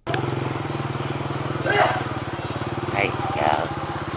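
Small motorcycle engine running steadily at cruising speed, a constant low hum with an even rapid pulse.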